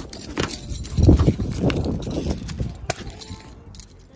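Clatter and knocks of things being handled close to a phone's microphone, with heavy thumps about a second in and keys jingling near the start; the noise dies down toward the end.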